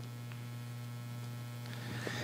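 Steady low electrical mains hum, with a faint rustle of prayer-book pages being handled near the end.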